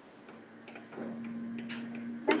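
Faint background noise from a workplace, heard over a video call: a steady low hum that grows louder about a second in, with a few light ticks.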